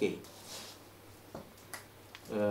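A man's voice trails off in a small room, followed by a faint pause holding a soft hiss and two small sharp clicks about half a second apart.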